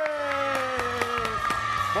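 A man's long, drawn-out announcer's call holds its last vowel and slides down in pitch, ending about one and a half seconds in. Under it, entrance music with a steady beat and a studio audience cheering.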